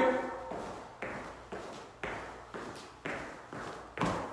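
Feet landing on the floor in a steady run of jumping jacks, a short thud about twice a second.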